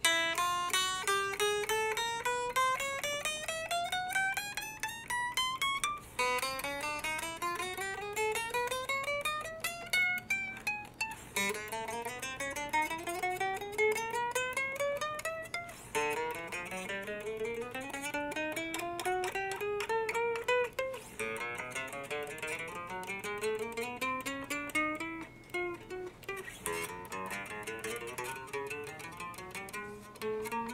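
Short-scale electric guitar played one string at a time, note by note, fret by fret up the neck, in about six rising runs. It is being checked for fret buzz after the truss rod was loosened to give the neck relief, and the notes ring cleanly with no buzzing.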